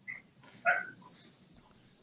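A dog barking once, short and sharp, about two-thirds of a second in, heard faintly through a video-call microphone.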